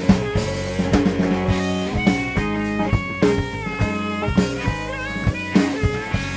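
Live rock-blues band playing an instrumental passage: electric guitar lines with bending notes over bass guitar and a drum kit keeping a steady beat.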